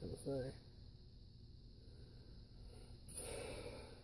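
A quiet background with a short breathy hiss about three seconds in, lasting nearly a second. A brief spoken word comes at the very start.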